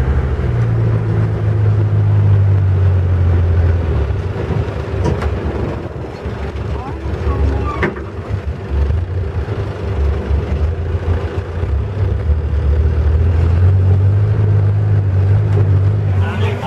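Boat engine running steadily under way, a loud low drone that eases off about six seconds in and builds again near the end.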